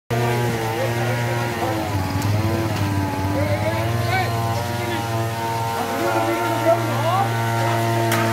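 An engine running steadily at an even pitch, with people's voices over it.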